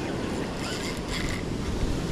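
Surf washing up the beach, with wind buffeting the microphone.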